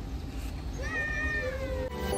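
A single drawn-out, high-pitched animal call about a second long, falling slightly in pitch near its end, over a steady low rumble.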